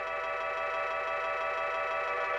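Techno DJ mix in a breakdown: sustained synthesizer chords with almost no bass or kick drum, swelling slightly louder.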